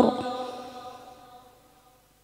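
The end of a woman's long held Qur'an-recitation (tilawah) note: the voice stops at the very start and its reverberant echo dies away over about a second and a half, leaving silence.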